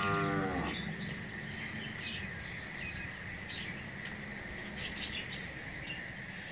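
Cattle mooing once, briefly and at the very start, the pitch sliding slightly down, with birds chirping around it.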